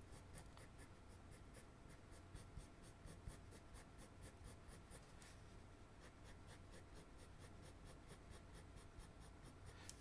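Black Col-Erase colored pencil drawing quick, short vertical hatching strokes on paper: faint, evenly paced scratches, several a second.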